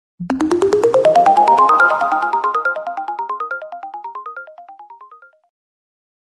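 A short musical intro jingle: a fast run of short, bright pitched notes, about eight a second, climbing in pitch for about two seconds. The notes then keep repeating at the top and fade out about five seconds in.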